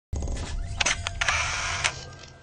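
Logo-sting sound effect of camera shutter clicks, several sharp clicks over a low rumble and a noisy hiss, the last click the loudest near the end.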